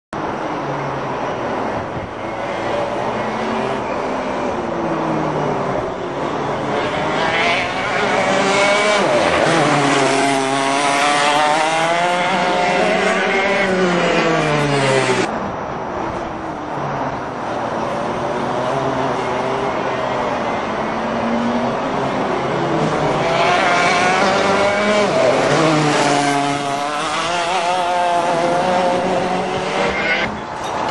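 TKM two-stroke kart engines revving as karts pass on the track, the pitch repeatedly climbing and falling as they accelerate and lift, loudest in two passes in the middle and near the end, with a sudden break about halfway through.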